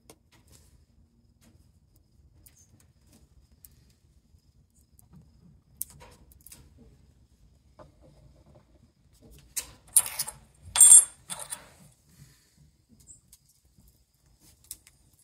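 Quiet handling, then a quick run of sharp metallic clinks and a scrape with a short ring about ten seconds in: a steel broadhead being picked up and fitted onto a glued arrow shaft.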